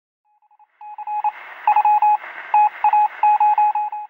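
Morse code sound effect: a single steady beep keyed on and off in a run of short and long tones, over a faint hiss.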